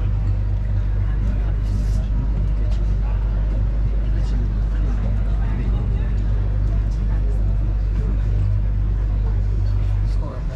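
Canal tour boat's motor running with a steady low hum, heard inside the passenger cabin, with passengers' voices in the background.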